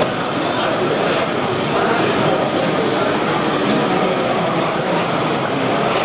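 Steady babble of many voices from an exhibition hall crowd, with no single voice standing out.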